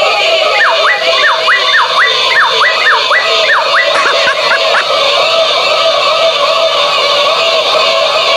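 A SpongeBob Joke Teller talking plush toy's recorded electronic voice, heard as several overlapping, out-of-sync copies of the same clip. A run of repeated swooping up-and-down sounds fills the first half.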